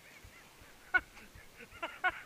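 Short honking animal calls: one about a second in, then a quick run of three or four near the end.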